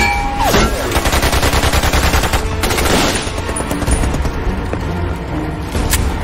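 Automatic rifle fire in a sustained firefight: many rapid shots overlapping, with a low rumble under them. A brief falling whine comes near the start.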